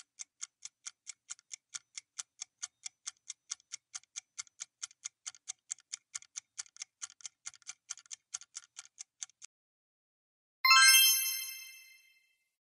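Quiz countdown-timer sound effect: clock-like ticks about four a second that stop about 9.5 s in, followed about a second later by a bright ringing ding that fades away, marking the end of the countdown and the reveal of the right answer.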